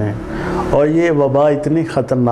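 A man speaking Urdu at a steady conversational level, with a short hissing noise under a faint low hum in the first moment before his voice resumes.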